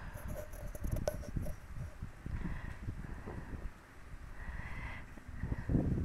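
Electric sewing machine running and stitching a seam, with a sharp click about a second in.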